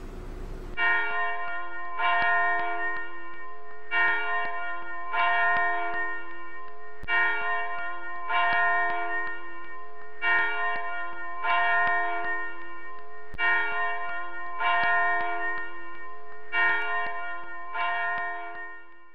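Bells ringing, a new stroke every one to two seconds, each tone ringing on under the next, starting about a second in.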